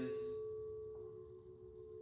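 Quartz crystal singing bowls ringing with a sustained pure tone, a fainter higher tone above it, slowly fading.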